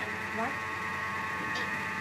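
Steady electric hum from a small kitchen motor, made of several steady high-pitched tones that run on unchanged.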